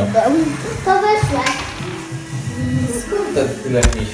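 Children's voices over background music, with a single sharp knock near the end.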